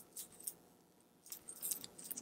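Faint, small clicks and light scraping as a watch crystal is pressed by thumb into its L-shaped gasket in a Seiko 6309-7040 dive watch case, worked evenly all the way around. A couple of single clicks come first, then a quicker run of light clicks over the last second.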